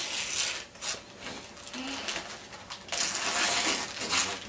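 Gift wrapping paper rustling and crinkling as a present is unwrapped, in two spells: a short one at the start and a longer one about three seconds in.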